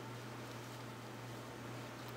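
Faint steady hiss with a low, constant electrical hum: room tone, with no distinct handling sounds.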